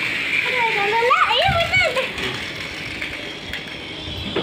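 A young child's high voice calling out, its pitch swooping up and down for about a second and a half, over a steady high hiss.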